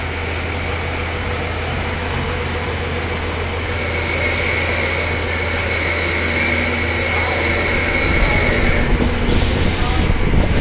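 Workshop machinery running steadily with a constant low hum; a high-pitched whine joins about a third of the way in and stops near the end, where a short hiss follows.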